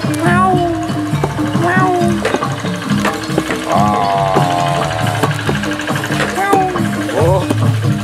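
Music with a repeating pattern of low, steady tones, with a voice calling out over it, one long wavering call about halfway through.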